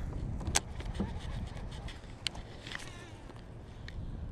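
Wind rumbling on the microphone, with a few sharp clicks from handling a fishing rod and baitcasting reel. Two of the clicks are louder, about half a second in and a little after two seconds.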